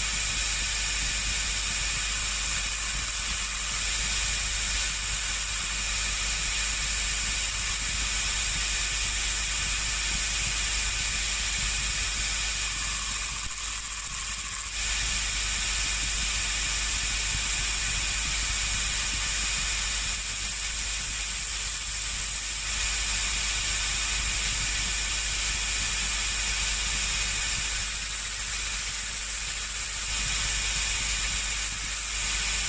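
Cobbler's finishing machine running, its rough sanding band grinding a stiletto heel tip to smooth the worn, uneven heel flat. A steady high hiss that dips briefly about halfway through and again near the end.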